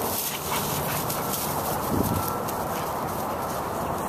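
Dogs play-wrestling, their paws scuffling and scrambling in dry leaves and mulch, with one brief louder sound about halfway through.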